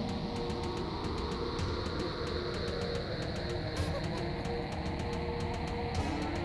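Dark background score from a 1980s anime soundtrack: two low held tones drone over a steady deep rumble, with no beat.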